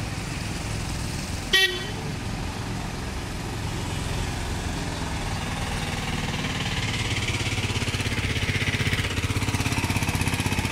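Idling and slow-moving road traffic, engines running steadily, with one short vehicle horn toot about a second and a half in. In the second half a nearby auto-rickshaw's engine puttering with a rapid even beat grows louder.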